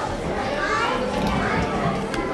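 Audience chatter with several overlapping voices, children's voices among them.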